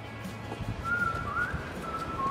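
A person whistling a few wavering notes, starting about a second in, just as the song has faded out.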